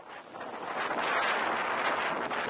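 Strong wind, gusting 45 to 50 knots, buffeting the microphone of a boat at sea, with the rush of a breaking sea; it fades in over about the first second, then holds steady and loud.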